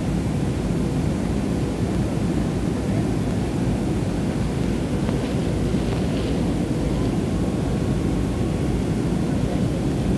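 Jet airliner in flight heard from inside the passenger cabin: a steady engine and airflow rush, heaviest in the low range, with no change in level.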